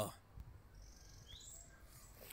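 Faint bird chirps over quiet outdoor background noise.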